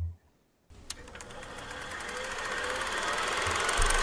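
A short low thump, then a fast, even mechanical clatter that starts under a second in and fades in, growing steadily louder.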